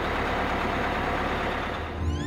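A city bus's engine running, a steady noisy rumble and hiss.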